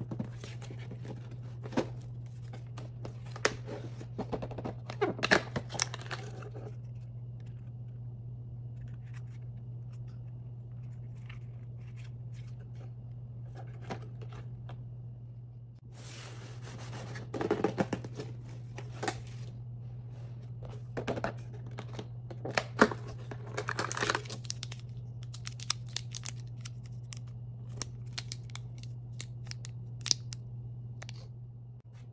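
Cardboard and plastic packaging being handled and torn open: an advent calendar's cardboard door is pushed open and a small crinkly plastic toy packet is unwrapped. The clicks, crinkles and tearing come in two spells, one in the first six seconds and one from about seventeen seconds on, with a quiet stretch between, over a steady low hum.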